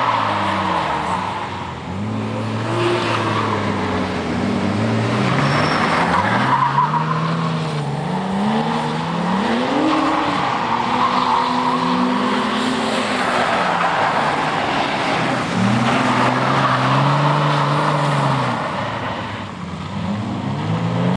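Car engines revving up and falling back again and again as the cars drift, over tyre squeal and skidding on a dusty surface.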